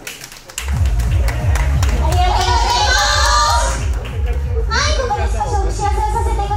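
Audience clapping starts about a second in, right after a song has ended, and young women's high voices talk and call out over it.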